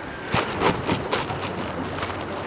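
Kitchen knife slicing a cheek off an iceberg lettuce on a plastic cutting board: a quick run of crisp crunches as the blade cuts through the leaves, most of them in the first second and a half.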